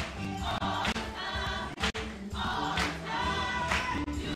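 Church choir of adults and children singing a gospel song together, with hand claps keeping the beat.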